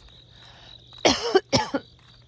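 A woman coughs twice in quick succession, about a second in, over a steady high-pitched insect trill.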